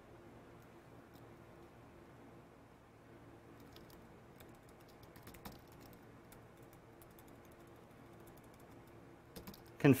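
Faint keystrokes on a computer keyboard: a handful of scattered clicks in the middle, then a few more just before the end, over low room tone.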